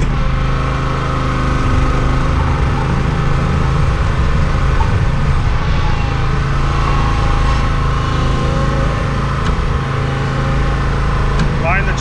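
Small gasoline engine of a Graco line-striping machine running steadily at an even speed.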